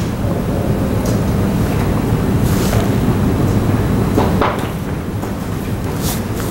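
Steady rumbling noise with a low hum running underneath, at about the loudness of the surrounding speech.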